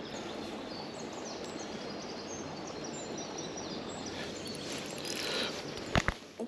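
Steady outdoor background noise with small birds chirping faintly, short high calls scattered throughout.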